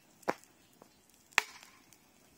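Two sharp cracks about a second apart, the second one louder, over a quiet outdoor background.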